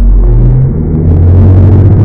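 Loud, deep edited-in bass sound: low droning tones that change pitch twice, dull and muffled with no treble, cut in and out abruptly.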